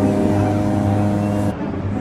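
A sustained organ-like chord from background music, held steady with many overtones and cutting off suddenly about one and a half seconds in.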